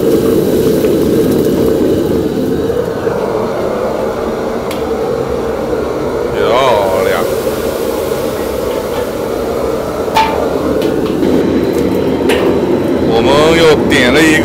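Wok cooking over a gas burner: a steady roar and sizzle of chilies frying in hot oil, with a few sharp clanks of the steel ladle against the wok. A voice cuts in briefly near the middle and again at the end.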